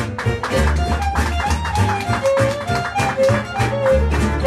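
Gypsy jazz string band playing: a violin carries the melody in held notes over the steady strummed rhythm of two acoustic guitars and an upright bass.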